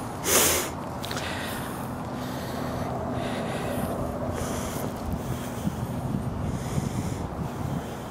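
A short, sharp puff of breath like a snort about half a second in, over wind on the microphone and a steady low hum.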